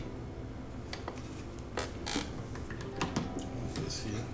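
Scattered light clicks and taps of hard plastic and metal as a small camera monitor is handled and fitted onto a mount on a camera rig.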